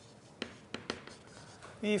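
Writing on a board: a few sharp taps and faint scraping of the writing stroke, then a man's voice begins just before the end.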